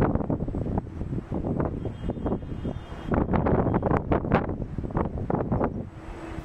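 Wind buffeting a microphone: a low rumble that rises and falls in irregular gusts.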